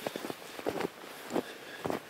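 Footsteps crunching in packed snow: a few irregular steps along a trodden path through deep drifts.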